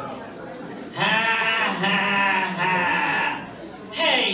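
An animated cartoon character's voice giving a long, drawn-out wavering cry, "Wooowww!", that starts about a second in and lasts about two and a half seconds, with two brief breaks.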